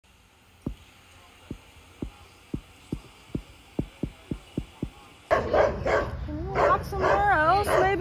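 About ten soft thumps that come closer and closer together. Then, about five seconds in, a sudden switch to dogs barking repeatedly outdoors, with a wavering whine near the end.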